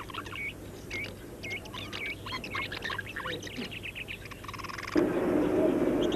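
Birds chirping, with short, quickly repeated calls that rise and fall in pitch. About a second before the end a louder, steady low sound comes in.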